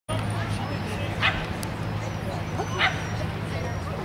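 A dog giving two short, sharp yips about a second and a half apart, over a steady low hum.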